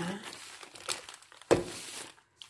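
Plastic grocery bags crinkling and rustling as they are handled, with a sudden sharp noise about a second and a half in.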